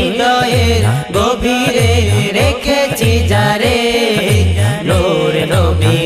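Bangla naat: singing voices in a devotional chant-like melody, over a deep swooping bass pulse that repeats about once a second.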